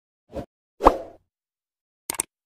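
Two quick cartoon-style pop sound effects, the second louder, with a short upward flick in pitch and a brief fading tail.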